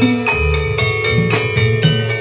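Live music for a jathilan dance in Javanese gamelan style: struck metal keyed instruments ring out note after note over steady drum beats.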